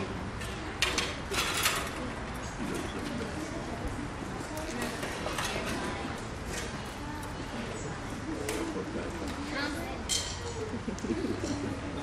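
Outdoor lull before a band piece: a low murmur of voices with birds calling, and a few light clicks and knocks as players shift chairs and stands into place.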